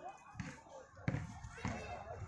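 Indistinct voices around an outdoor kabaddi court, with three dull low thumps spread across the two seconds.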